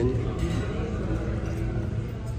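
Restaurant room noise: indistinct background chatter over a steady low rumble.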